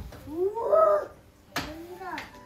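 A small child's wordless, high-pitched squeal, one drawn-out call that rises and then falls, followed near the end by a sharp knock and a shorter falling cry.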